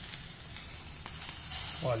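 Cubes of queijo coalho sizzling steadily as they brown in a hot cast-iron skillet.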